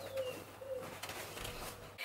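A pigeon cooing softly, low hooting notes, with a brief thin falling chirp of another bird near the start.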